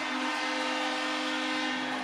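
Ice hockey arena goal horn blowing one long steady note, cutting off near the end. It is sounded for a home-team goal.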